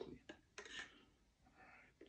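Near silence, with a few faint clicks and soft rustles from handling a plastic drinking bottle.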